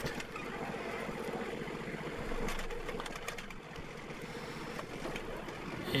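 John Deere 4100 compact tractor's three-cylinder diesel engine running steadily at low working revs, heard from the driver's seat.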